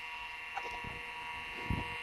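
Steady whine and hum of an open vintage PC running with its Seagate ST-4038 MFM hard drive spinning, with a few light clicks and a low knock about three-quarters of the way through.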